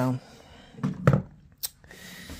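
A few light knocks, then a sharp click near the end, as a Mossberg MC2C pistol is set down into a gun rest on a table.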